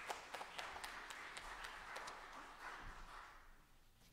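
Scattered applause from a small congregation, faint and dying away near the end.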